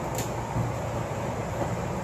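Furrion Chill rooftop RV air conditioner running inside a cargo trailer: a steady, quiet fan and compressor hum, with nothing sudden over it.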